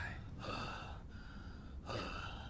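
A faint, breathy, drawn-out "oh" from a person's voice, like a gasp, lasting just over a second.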